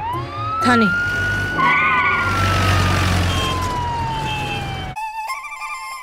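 Police car siren winding up over about a second, holding a high wail, then slowly winding down in pitch over a low vehicle rumble. It cuts off suddenly about five seconds in and gives way to background music.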